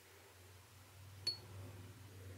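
Quiet room with a low steady hum, broken about halfway through by a single light clink of a paintbrush against a small glass ink jar.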